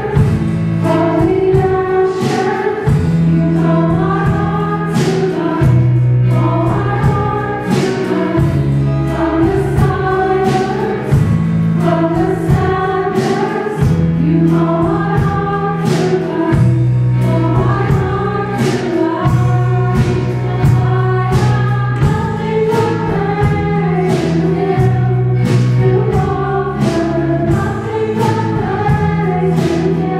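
A small church choir singing an anthem, accompanied by guitars, with a low bass line and a steady beat.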